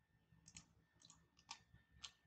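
Near silence with a few faint computer mouse clicks, some in quick pairs, as a dialog is confirmed and the view is dragged.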